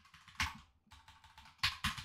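Keystrokes on a computer keyboard: a few irregular taps, one about half a second in and a quick cluster near the end.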